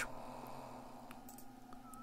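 Faint steady background hum and hiss, with a couple of faint short clicks.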